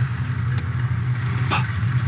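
Car engine running steadily with a low hum: the radio drama's sound effect for riding inside a moving car. There is a faint click about one and a half seconds in.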